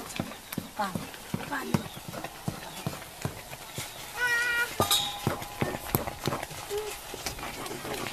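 Wooden stirring stick knocking and scraping against an iron karahi as thick nettle (sisnu) curry is stirred, about three knocks a second.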